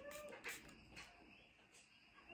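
Near silence: room tone, with a faint held tone fading out at the very start and a couple of faint soft ticks.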